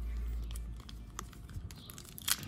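Foil booster-pack wrapper being handled in the fingers: scattered small crinkles and clicks as it is gripped at the top edge ready to be torn open. A low hum fades out within the first second.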